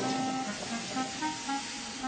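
A horn-like pitched tone sounding as a run of short toots of slightly differing pitch, then settling into a longer held note near the end.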